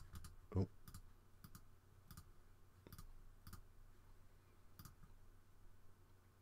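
Faint clicks of a computer mouse, about seven single clicks spaced irregularly over a few seconds, with a short spoken "oh" about half a second in.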